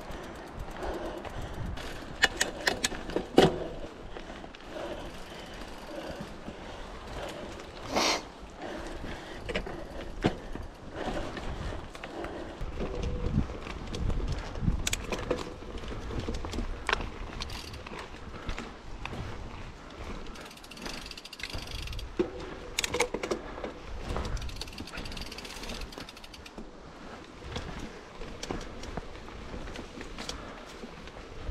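Mountain bike on a dirt forest singletrack: a steady low rumble of tyres and wind on the microphone, with the chain and frame rattling. Sharp knocks come over roots and bumps, the loudest about eight seconds in.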